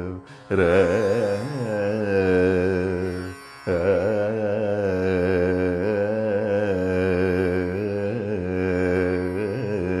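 Male Carnatic vocalist singing an unaccompanied-style raga Saveri alapana, the voice sliding and oscillating through gamakas over a steady plucked-string drone. The singing breaks off briefly twice, about half a second in and again at about three and a half seconds.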